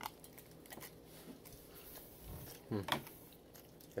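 A person chewing a mouthful of oatmeal muffin with soft, quiet mouth sounds and small clicks, and a hummed "hmm" about three quarters of the way through.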